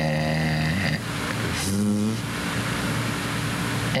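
A man's voice sounding out a word slowly in long drawn-out held sounds: one long held tone in the first second and a shorter one about two seconds in, over steady hiss.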